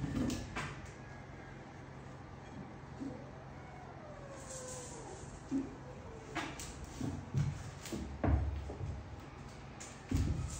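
Kittens playing on a tiled floor: scattered knocks and light thumps as they scramble, pounce and bump about, clustering and growing louder in the second half. A faint drawn-out gliding tone sounds in the middle, over a steady low hum.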